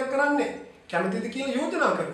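A man's voice talking in an interview, with a short pause near the middle.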